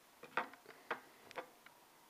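Small clicks and ticks of hands working a fly at a fly-tying vise: three sharper clicks about half a second apart, with fainter ticks between.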